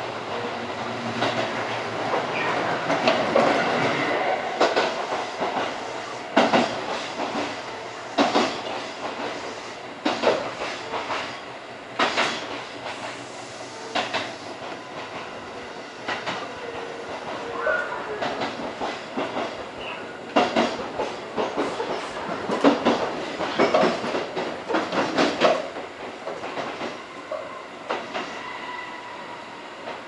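Tobu 8000 series electric train heard from inside the rear cab of its trailer control car: a steady running rumble with wheels clicking and knocking over rail joints in irregular clusters. The sound eases off near the end as the train comes into the station over its points.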